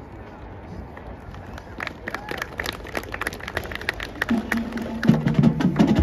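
Marching band music building from a hush. Faint crowd murmur gives way to a run of sharp percussion clicks from about a second and a half in. A low held note enters around four seconds, and the band swells louder near the end.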